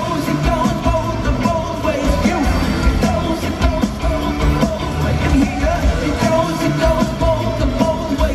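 Pop-rock band playing live with a male lead singer singing over drums, filmed from the audience in an arena.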